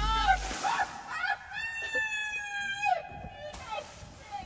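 A woman's wordless sing-song vocalizing: short rising and falling calls, then one long held note about halfway through that drops off at its end.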